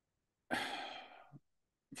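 A man's audible sigh: one long breath out of about a second that fades away, ending in a short low puff.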